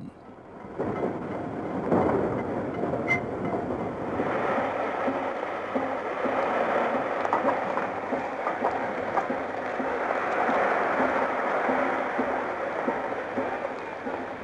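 Steam tram train running on its track: a steady rolling noise with faint, irregular wheel clicks, fading in over the first two seconds and then holding steady.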